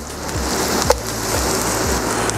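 Chopped onion and sliced garlic sizzling in hot cooking oil in a frying pan: a steady frying hiss that swells slightly about half a second in, with one brief click near the middle.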